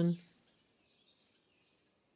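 The last syllable of a calm spoken word, then near silence: faint room tone.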